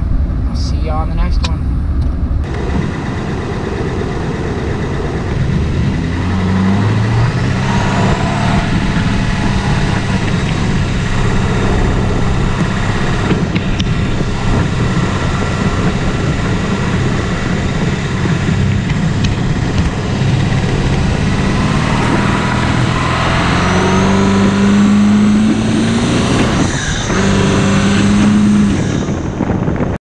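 A pickup truck being driven, heard from inside the cab: steady engine and road noise. The engine pitch climbs as the truck accelerates, about six seconds in and again for several seconds near the end.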